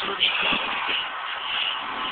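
A close, low rustling and shuffling noise, with faint television voices and music underneath.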